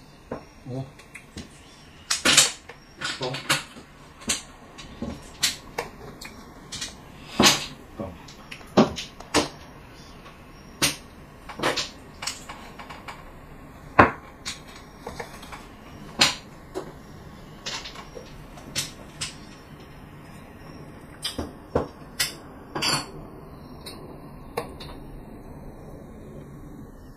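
Mahjong tiles clacking on the table as players draw and discard: sharp, irregular clicks about once or twice a second.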